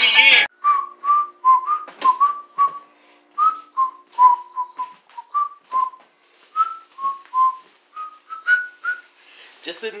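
A person whistling a tune in short, separate notes, about two or three a second, the pitch rising toward the end. Music cuts off about half a second in, just before the whistling starts.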